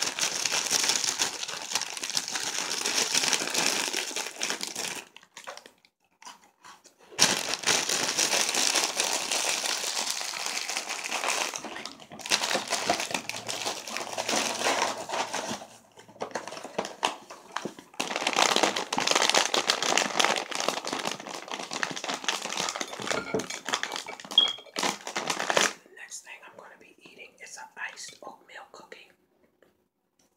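Foil snack bag and packaging crinkled and rattled close to the microphone in long spells with a few short pauses, giving way to lighter, scattered handling sounds near the end.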